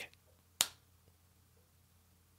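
A single sharp click from a Wegovy (semaglutide) auto-injector pen pressed against the belly, the click that marks the start of the injection.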